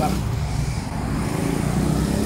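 Steady low engine rumble of a motor vehicle running.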